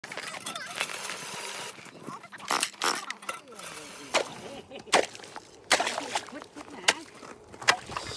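Steel ice chisel chopping into lake ice: a series of sharp, irregularly spaced strikes, with voices in the background.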